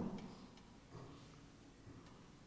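Quiet room tone with a few faint ticks and clicks. The end of a man's word dies away at the very start.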